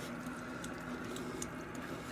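Raccoons eating food scattered on a wooden deck: faint chewing and a few small, scattered clicks, over a low steady hum.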